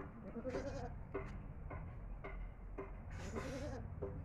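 A goat bleating twice, each a wavering call under a second long: one about half a second in and another near the end.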